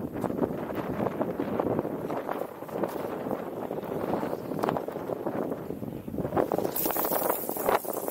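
Wind buffeting the microphone in uneven gusts, with scattered small taps and knocks throughout. A harsher gust of hiss comes in near the end.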